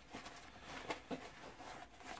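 Faint rustling and a few light clicks of hands rummaging in a small fabric kit bag for a bottle.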